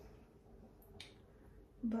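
Quiet small-room tone with a single sharp click about halfway through.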